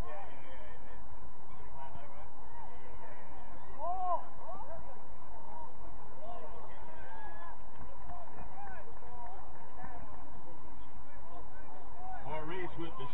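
A series of short honking calls, scattered irregularly and loudest about four seconds in, over a steady low background noise.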